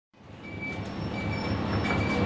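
Isuzu KL-LV280L1 bus idling, a steady low hum, under the bus's left-turn-signal warning alarm beeping over and over, with its tone switching between a lower and a higher pitch. The sound fades in at the start.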